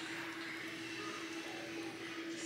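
Quiet room tone with a single steady hum.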